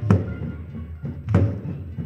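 Band bass drums (bombos) struck twice, about a second and a quarter apart, each hit a sharp crack with a low boom, in a break where the saxophones have stopped.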